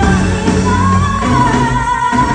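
Live Malay pop music with female vocals over a loud band, the voice holding one long, steady note from a little under a second in.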